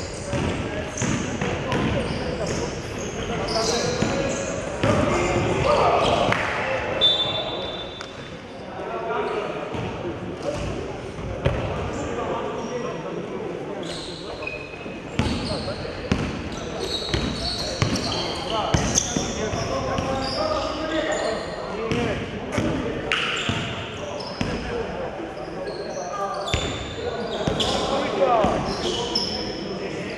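Indistinct voices talking in a large, echoing room, with frequent knocks and clatter scattered throughout.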